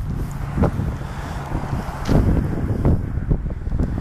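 Wind buffeting the camera microphone outdoors: an uneven low rumble that swells in gusts.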